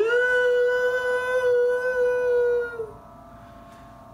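A teenage boy's solo singing voice holding one long note: it slides up at the start, stays steady for about three seconds, then tails off into a quieter pause.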